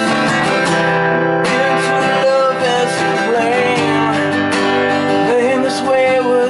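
Acoustic guitar strummed in a steady rhythm, playing an instrumental passage between sung verses.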